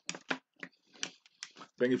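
About six short, sharp clicks, spaced irregularly, then a man starts speaking near the end.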